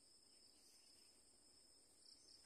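Near silence with a faint, steady, high-pitched insect chorus, crickets by their sound.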